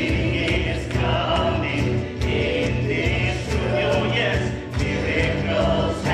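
Live contemporary worship song: several singers with microphones sing together over keyboard, bass guitar and acoustic guitar, with a steady beat.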